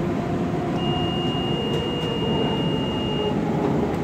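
Light-rail car running along the track, heard from inside the car: a steady rumble of wheels and running gear. About a second in, a single high steady tone sounds for about two and a half seconds and then stops.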